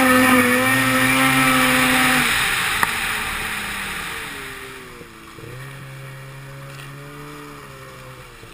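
Snowmobile engine running hard under throttle with rushing wind and track noise, then the throttle is let off about two seconds in and the sound fades away. From about halfway on the engine runs quieter at lower revs, its pitch rising and falling a little as the sled slows.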